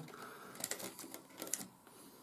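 Faint, light clicks and scrapes of hands handling a wooden cocktail stick and a laser-cut card model, with a few small ticks scattered through.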